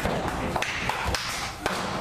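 A few dull thuds and taps of wrestlers' feet on the wrestling-ring canvas, about half a second apart, over crowd chatter in the hall.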